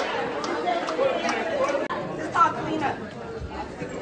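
Crowd chatter in a large hall: many people talking at once with no music. One voice rises briefly louder about two and a half seconds in.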